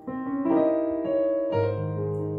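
Keyboard workstation playing a piano sound: a two-handed improvised run, with a diminished chord used in place of the dominant (five) chord. A chord is struck at the start, notes shift over it, and a low bass note with a new chord comes in about one and a half seconds in.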